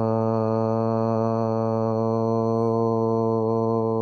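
A man's voice chanting a long 'aaa' on one steady low note, held unbroken in a single breath. The tone grows slightly softer and less bright toward the end.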